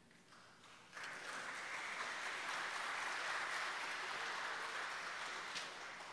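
Church congregation applauding, starting about a second in, holding steady and dying away near the end.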